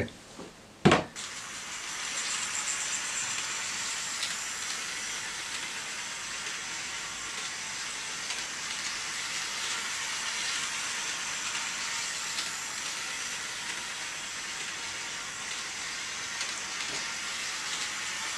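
Hornby OO-gauge 0-4-0 model tank locomotive running around an oval of track: a steady whirring hiss from its small electric motor and wheels on the rails. A single knock about a second in.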